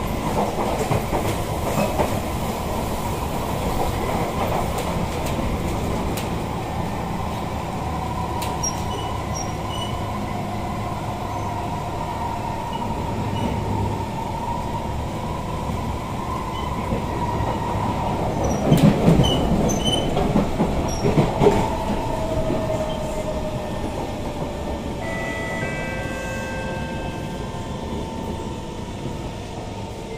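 SMRT C151 train heard from inside the carriage as it runs, with a steady high motor whine over the rumble of the wheels. In the later part the whine falls in pitch and several tones sound together. A few louder bumps come about two-thirds through.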